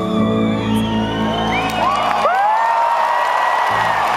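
A live band's held closing chord, with the piano in front, cuts off about two seconds in. An arena crowd cheers, whoops and whistles over it and on after it.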